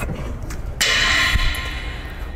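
A sudden short hiss of pressurized gas escaping at a hose fitting on a Halotron I extinguishing-agent system, starting about a second in and fading over about a second, as the gas line is coupled back to the vessel.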